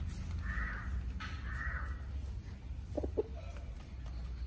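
Two harsh, caw-like bird calls, each about half a second long, in the first two seconds, over a steady low rumble. Two short, low sounds follow about three seconds in.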